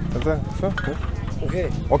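Brief snatches of conversation: short spoken phrases over a steady low background rumble.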